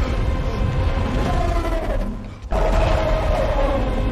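Movie soundtrack: music over a heavy low rumble. It falls away about two seconds in and comes back abruptly half a second later.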